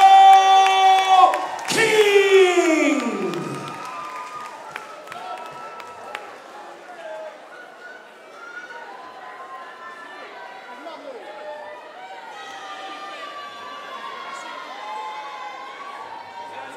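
A ring announcer's voice drawing out the winner's name in long, held calls that fall away in pitch over about the first three seconds. This is followed by a crowd cheering and shouting at a lower level.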